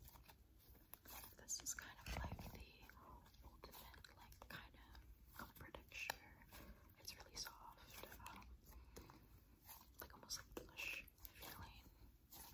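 Slime being stretched, folded and squeezed by hand close to the microphone, giving a quiet, continuous stream of small sticky clicks and pops.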